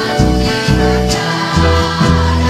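Children's choir singing with a live band of keyboard, guitar and bass, over a light beat about twice a second.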